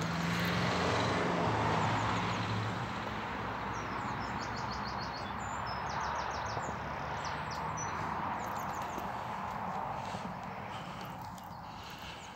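Road traffic: a vehicle passing, loudest in the first two seconds, then a steady hum of traffic, with small birds chirping in quick series from about four to nine seconds in.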